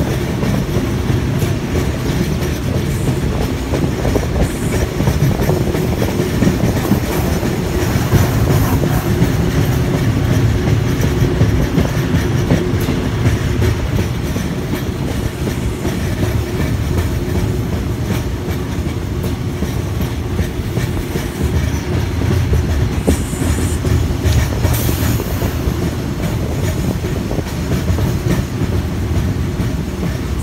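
A THN/NKF diesel railcar train running along the track, heard from an open carriage window as a loud, steady, low rumble of engine and wheels on rail.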